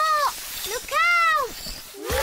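A young child's cartoon voice crying out twice in alarm, a short cry and then a longer one about a second in, each rising and then falling in pitch, as she slides out of control on ice skates.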